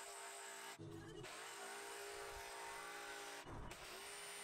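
Milwaukee M18 cordless jigsaw cutting plywood, heard faintly, its motor running steadily with short breaks about a second in and near the end.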